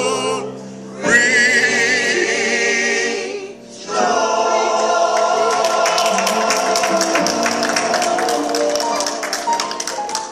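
Mass gospel choir singing in held chords with wide vibrato, breaking off twice briefly in the first few seconds and coming back in. From about halfway, a steady run of sharp beats, about three a second, keeps time under the voices.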